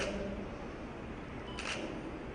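Two short, sharp clicks about a second and a half apart, over a steady low room hum.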